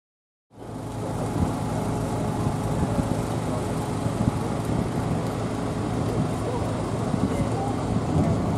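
A vehicle engine running steadily, with a crowd of people talking around it. The sound fades in about half a second in.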